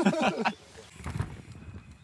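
A man laughing briefly, then a quieter stretch of irregular low thuds.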